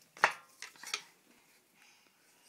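A sharp wooden knock followed by a few lighter clicks and clatters as a wooden drum mallet and a toddler's toy drum are handled.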